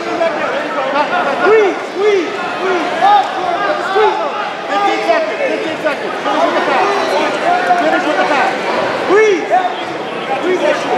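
Crowd of spectators and coaches talking and calling out all at once: many overlapping voices, none standing out clearly.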